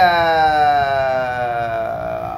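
A man's voice drawing out one long vowel for about two seconds, its pitch slowly falling, as he holds a word while thinking.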